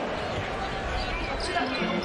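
Game sound in a basketball arena: a steady murmur of crowd noise from the stands, with the ball and play on the hardwood court.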